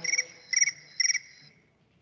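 Recorded chirping from an artificial background nature-sound system: three short trilled chirps about half a second apart, then it stops.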